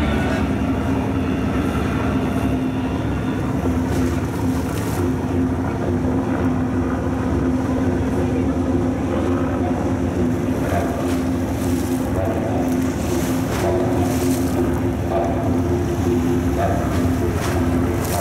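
A boat engine runs with a steady drone, with wind buffeting the microphone.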